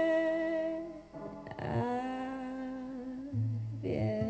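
A singer holds long wordless notes over upright piano accompaniment: first a higher note, then, after a short break about a second in, a lower one.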